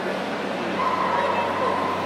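A dog whining, a thin high tone held from just under a second in, over the murmur of a crowd in a large hall.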